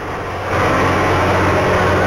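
A fishing boat's engine running with a steady low hum, over a rushing noise of the sea and wind. It grows louder about half a second in.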